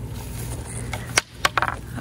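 Rustling through tall grass, then a few sharp clicks and knocks a little past the middle as a small plastic rake and a hand dig dog chew toys out of the grass.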